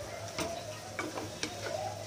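A wooden spatula stirs chopped green tomatoes and green garlic frying in oil in a non-stick kadai, with light sizzling. There are about four sharp clicks as the spatula knocks and scrapes against the pan.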